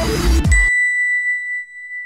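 Electronic music with a beat cuts off under a second in, and a single high, clear ding rings out over it and slowly fades: the chime of a logo sting.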